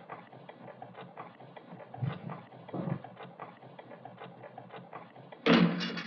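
Tavern background atmosphere: an indistinct murmur of voices with small clicks and clatter. A man's voice calls out loudly near the end.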